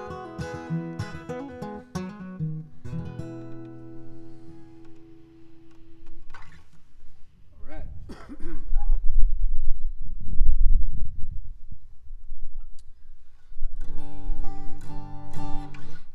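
Acoustic guitar finishing a song with its last notes ringing out, then loud low thumps and rumbling as the guitar is handled and lifted, then strummed chords again near the end.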